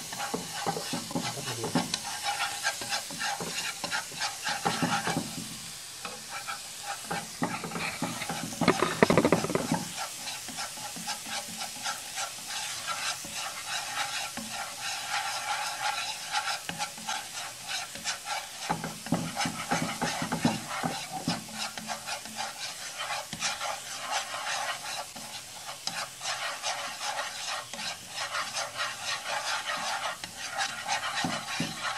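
Minced garlic and chili sizzling and crackling in hot fat in a nonstick frying pan while chopsticks stir them, with louder stirring strokes about five and nine seconds in. This is the garlic being fried until fragrant, still pale and not yet golden.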